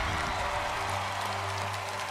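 Studio audience applauding and cheering over a sustained low music bed.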